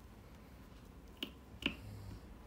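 Two short sharp clicks about half a second apart, the second louder, as taut yarn loops are pulled free of the metal nails on a wooden frame loom.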